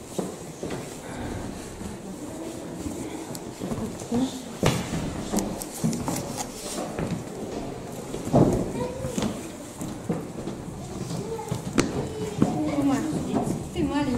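Indistinct background talk in a room, with several sharp knocks and clicks along the way.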